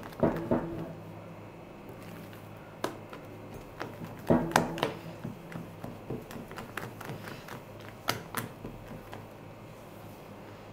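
Silicone spatula folding whipped egg whites into a thick yogurt batter in a glass bowl: soft wet squishing with scattered taps and scrapes of the spatula against the glass. The loudest cluster of taps comes about four and a half seconds in.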